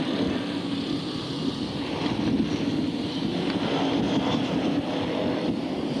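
A pack of BriSCA Formula 1 stock cars' V8 engines running at race speed around the oval, a steady, dense mix of engine noise with no single car standing out.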